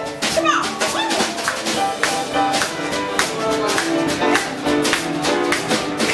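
Live rock'n'roll band playing an uptempo boogie number: piano and drum kit keep a steady, driving beat, with a short sung phrase near the start.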